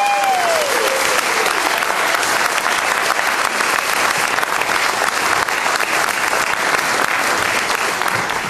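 Audience applause, many hands clapping steadily at the end of a song, with a short voice call rising and falling near the start.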